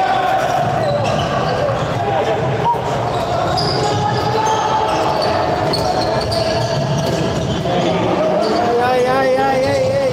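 A handball bouncing on a sports-hall floor under steady crowd noise from the stands. Fans' voices carry a long wavering chant that rises near the end, with a sharp knock about a third of the way in.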